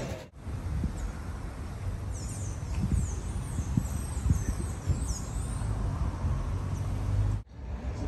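Birds calling with a run of short, high, down-sweeping chirps in the middle, over a steady low rumble.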